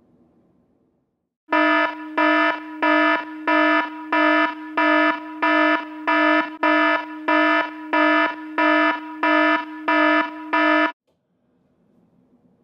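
Timex clock radio's alarm going off: a loud, even run of about fourteen electronic beeps, roughly three every two seconds, cutting off suddenly near the end.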